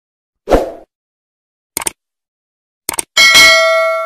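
Subscribe-button animation sound effects: a short pop, then two quick double clicks about a second apart, then a bright bell ding that rings on and fades.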